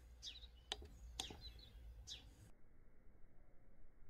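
Faint bird chirps: several quick, falling chirps in the first half. They cut off abruptly about two and a half seconds in, leaving only faint hiss.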